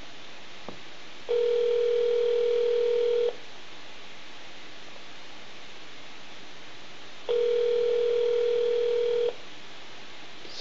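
North American telephone ringback tone over a phone line: two rings, each about two seconds long, starting six seconds apart, as an outgoing call rings unanswered at the far end. A faint click comes just before the first ring.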